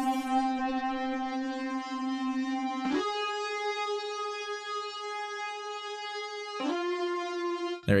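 Alchemy synth lead playing three long sustained notes, stepping up and then back down, with a short pitch slide into each new note. A high-cut EQ filter takes off the top end about half a second in.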